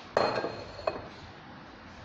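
Metal kitchenware clinking: a sharp metallic knock with a short high ring that dies away within a second, then a lighter knock just under a second later.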